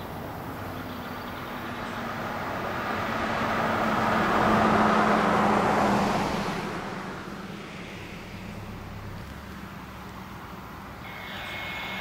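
A road vehicle driving past: a wash of road noise that swells to its loudest about five seconds in, then fades away. A steady high radio tone starts just before the end.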